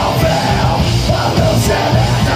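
Heavy metal band playing live and loud: distorted electric guitars, bass guitar and drum kit, with yelled vocals over the top.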